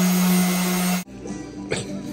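Handheld electric orbital sander with a dust hose running steadily against a patched plaster wall, loud, cutting off abruptly about a second in. After that, quieter restaurant table sounds with a couple of sharp clinks.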